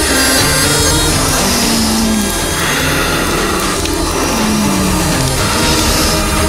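Background music from a TV drama score, with low notes that slide downward twice.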